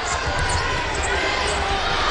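Live game sound from a basketball arena: steady crowd noise, with a basketball being dribbled on the hardwood court.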